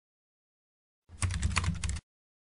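Computer-keyboard typing sound effect: a quick run of key clicks starting about a second in, over a low hum.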